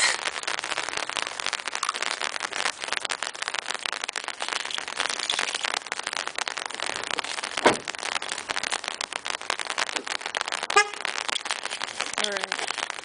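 Rain pattering on an umbrella canopy overhead: a dense, steady crackle of drops, with two louder knocks in the second half.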